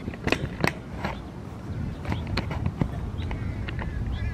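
Irregular plastic clicks and knocks of a tripod being adjusted, over a low rumble of handling noise on the camera's microphone.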